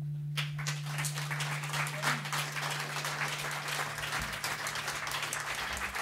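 Audience applauding at the end of a live acoustic song. The clapping breaks out about half a second in, and a low held note rings under it, fading near the end.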